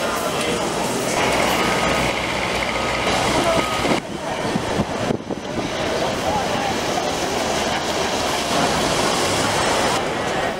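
Busy city ambience: a dense, steady wash of crowd chatter and traffic noise. The sound changes abruptly about four seconds in and again about a second later.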